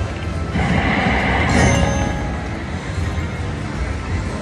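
Red Festival video slot machine playing its game music and reel-spin sound effects, with a louder noisy rush of effect sound early in the spin, over a steady low casino hum.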